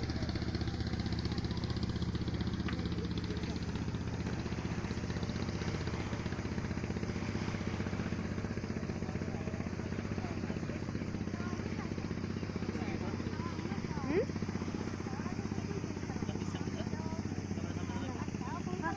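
An engine running steadily at one low, unchanging pitch, with voices faintly in the background.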